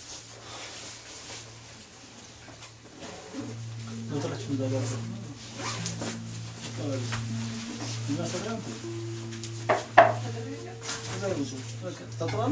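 People speaking in a small room over a steady low hum, with one sharp knock about ten seconds in.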